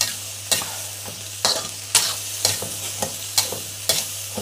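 Metal spatula scraping and stirring in a wok, about two strokes a second, over the sizzle of green ranti (black nightshade) berries frying in oil with pounded shrimp paste. A low steady hum runs underneath.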